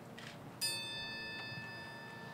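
A metal triangle struck once with a metal beater about half a second in, ringing on with a bright, slowly fading shimmer of high tones.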